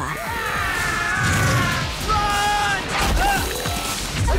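Animated battle soundtrack: dramatic action music over heavy impacts of lava blasts, about a second in and again about three seconds in.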